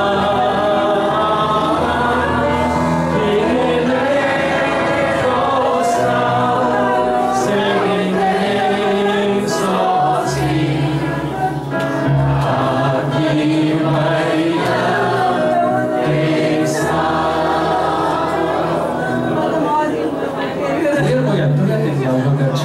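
A congregation singing a worship hymn, led by a man's voice on a microphone, over sustained instrumental accompaniment.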